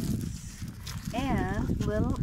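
Pugs whining at the wire of their pen: a wavering whine about a second in, then a shorter rising one near the end. Wind rumbles on the microphone.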